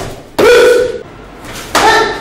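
A sharp slap of a strike landing, then a loud, held martial-arts shout (kiai) about half a second in. A second shout starts near the end.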